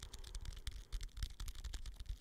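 Fast fingertip tapping right at the microphone: many quick, light, irregular taps a second.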